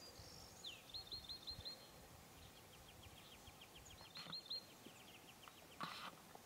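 A small songbird singing faintly: one slurred note, a quick run of about five short high notes, then a longer series of rapid repeated notes. A brief tap sounds just before the end.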